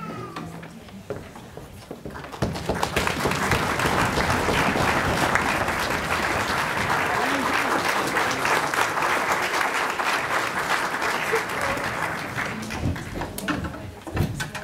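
Audience applauding: the clapping starts about two seconds in, holds steady and strong, and dies away near the end.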